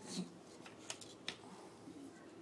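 A small plastic-lidded supplement jar handled against a hard floor: a brief rustle, then two sharp faint clicks about a second in.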